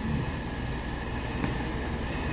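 A steady low rumble of background noise with a faint high hum above it, unchanging throughout.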